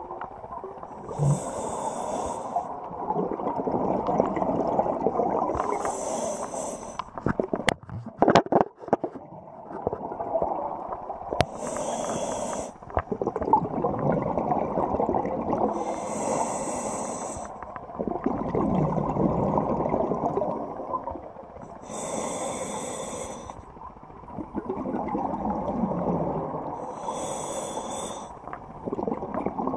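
Scuba diver breathing through a regulator underwater: a hiss on each inhalation about every five seconds, with a bubbling rumble of exhaled air in between. A quick cluster of clicks comes about a third of the way in.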